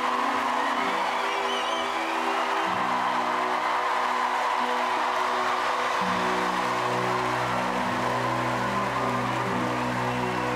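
Large theatre audience applauding and cheering, with a few whoops in the first couple of seconds, over background music of slow held chords that grow fuller about six seconds in.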